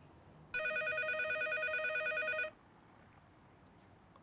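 Telephone ringing: one electronic trilling ring about two seconds long, starting about half a second in. The call goes unanswered.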